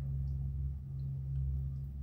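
A low, steady hum with a few faint ticks: room tone with no other clear sound.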